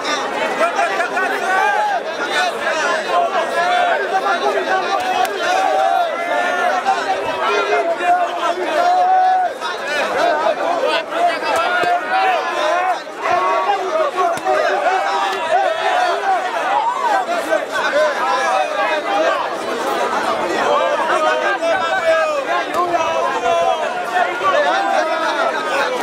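Ringside crowd of spectators shouting and talking at once, a dense, unbroken din of many overlapping voices.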